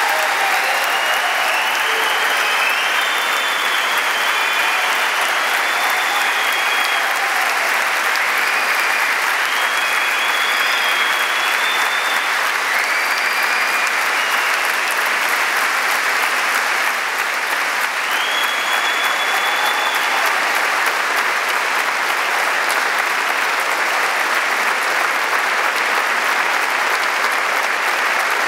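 A large standing audience applauding loudly and steadily, a long round of clapping, with a few high calls over it in the first half.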